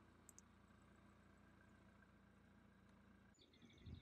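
Near silence: a faint steady background hum, with one brief, faint high chirp about a third of a second in. A little after three seconds the hum drops away abruptly.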